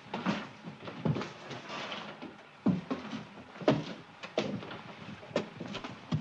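Footsteps of high-heeled shoes climbing stairs: about six uneven, hard knocks roughly a second apart.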